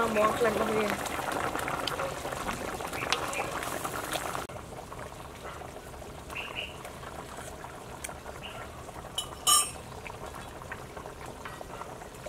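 A pot of braised cow tongue in sauce bubbling at a simmer, a dense crackle of small pops, which stops abruptly about four and a half seconds in. A single short metallic clink follows about nine and a half seconds in.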